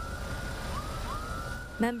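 Emergency vehicle siren, its tone sweeping up quickly and then holding, repeating about every second and a half over a low rumble.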